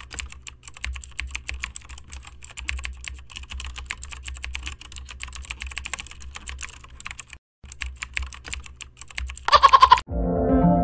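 Keyboard typing sound effect: a fast, steady run of key clicks as on-screen text types itself out, pausing briefly near the end and finishing with a louder flurry of clicks.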